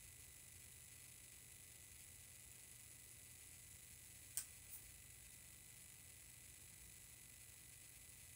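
Near silence with faint room hiss, broken a little over four seconds in by one sharp click and a fainter one just after, from a plastic eyeshadow palette being handled.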